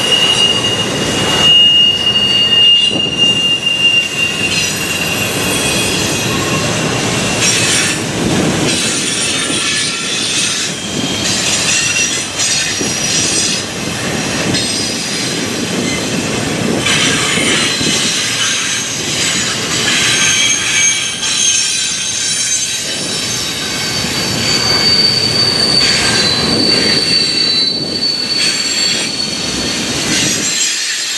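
Double-stack container train's well cars rolling past, with a loud, steady rumble and clatter of steel wheels on rail. Thin high-pitched wheel squeals come and go over it, one in the first few seconds and another near the end.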